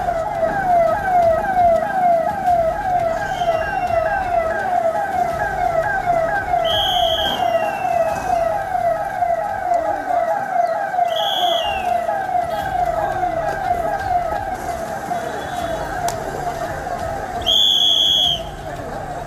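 Electronic police siren in a fast yelp, its pitch sweeping down several times a second without a break. Three short, shrill whistle blasts cut in at intervals of about five seconds.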